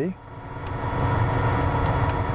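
Steady machine noise with a constant hum and whine in a light aircraft's cockpit, and one faint click a little under a second in.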